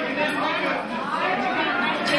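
Several voices talking at once: overlapping conversation among a crowd of guests.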